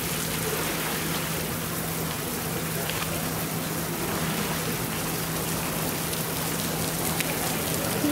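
Steady, even hiss of water, like rain on a surface, with a steady low hum underneath.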